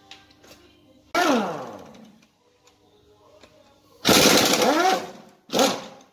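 Cordless impact driver working bolts on a diesel engine's cylinder head in three bursts: a short one about a second in, a longer hammering run of about a second midway, and a brief one near the end. Each time the trigger is released, the motor winds down with a falling whine.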